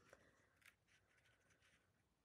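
Near silence, with a couple of faint soft ticks from paper being handled and pressed flat on a cutting mat.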